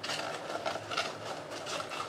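A hand rummaging through folded paper notes inside a small box: a quick, irregular run of paper rustles and light clicks.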